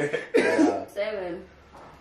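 Short wordless vocal sounds from a person: a sudden cough-like burst about a third of a second in, then a brief murmur.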